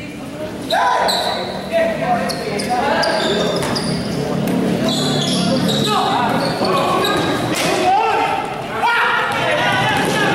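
A basketball being dribbled on a hard court floor, with repeated bounces, under steady shouting and calling from players and spectators that echoes around a large gym.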